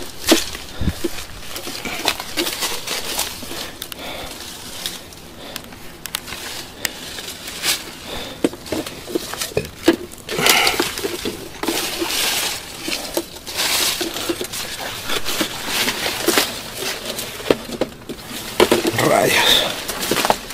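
Footsteps scrambling uphill through dense brush, with leaves rustling and twigs and dry stems cracking and crunching in irregular snaps.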